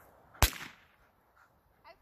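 A single gunshot: one sharp crack about half a second in, with a short tail of echo.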